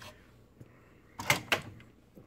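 Two sharp plastic clacks about a quarter of a second apart as the used pod is taken out of a single-serve coffee brewer and the brewer is handled.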